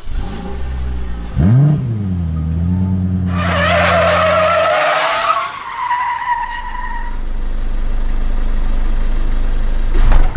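Car sound effect: an engine revs up about a second and a half in and holds, then tyres squeal in a long skid from about three seconds in, falling slightly in pitch. A low engine rumble runs on after the skid, and a sharp hit comes at the very end.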